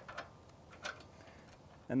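A padlock being closed through a steel staple and travel pin: a few light metal clicks and taps, the sharpest about a second and a half in.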